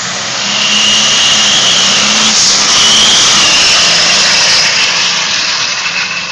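Twin-turbo Cummins diesel in an S10 drag truck at full throttle on a launch and quarter-mile run, loud from about half a second in, with a steady high whistle over the engine. The truck was running with what the owner calls a pretty nasty boost leak.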